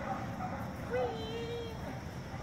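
A dog running an agility course gives one drawn-out, high whining yelp about a second in, lasting nearly a second.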